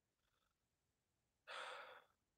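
Near silence, then about one and a half seconds in a man gives a short breathy sigh lasting about half a second.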